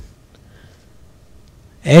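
A spoken word trails off, then a quiet pause with faint room hiss and faint strokes of a felt-tip marker on a whiteboard, then speech starts again near the end.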